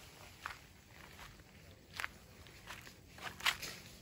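Footsteps of a person walking slowly over weedy, leaf-strewn ground: a handful of soft, irregular steps, the sharpest about two seconds in and near the end.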